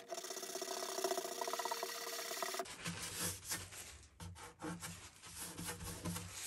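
Small sanding block rubbed back and forth in quick, short strokes on the lacquered spruce top of a Gibson J-45 acoustic guitar: a dense, scratchy rasp. After about two and a half seconds it changes to softer, broken rubbing.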